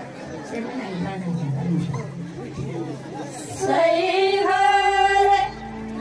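Women's voices in Tamang folk singing through a stage PA: a few seconds of murmured voices, then a woman comes in with a long, loud held sung note about four seconds in that breaks off near the end.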